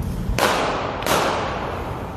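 Two gunshots about two-thirds of a second apart, each a sharp crack trailing off in an echo, over street noise.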